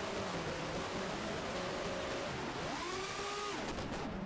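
Brushless motors of an FPV quadcopter whining over wind hiss on its onboard camera microphone. About two and a half seconds in, the pitch rises sharply as the throttle is punched, holds for about half a second, then drops again.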